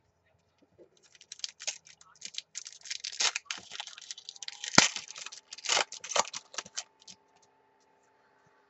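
A trading card pack's foil wrapper being torn open and crinkled by hand: a run of crackling from about a second in, with one sharp, loudest crack a little after the middle, dying away about a second before the end.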